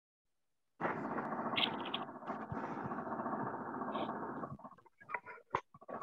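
Muffled background noise from a participant's unmuted microphone coming through a video call. It is cut off above the voice band and lasts about four seconds, then a few short clicks follow.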